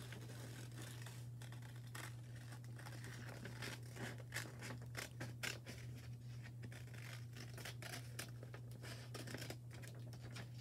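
Scissors cutting paper: a faint, irregular run of snips with the rustle of the paper sheet being turned. A steady low hum runs underneath.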